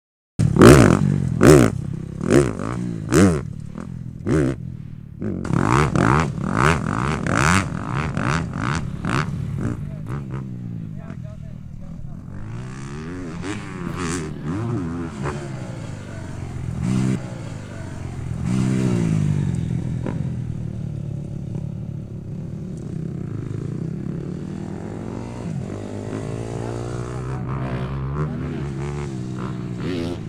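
A Honda motocross bike's single-cylinder four-stroke engine is blipped in sharp short revs in the first ten seconds, mixed with a person's voice and a laugh. It then runs on with its pitch rising and falling as the bike rides the track.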